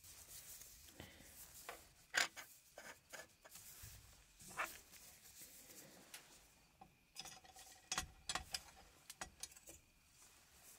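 Faint, irregular small clicks and taps with soft rubbing as the plastic parts of an anatomical eye model are handled with gloved hands in a metal instrument tray, the clicks coming thicker near the end.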